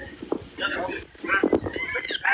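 People talking close by, several voices in short broken phrases.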